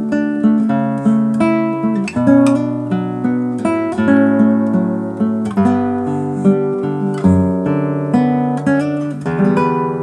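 Classical guitar played fingerstyle: a slow melody of plucked notes, about two a second, each ringing and fading over held bass notes.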